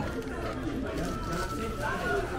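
Indistinct background talking and chatter from several voices, with a faint steady tone for about a second in the middle.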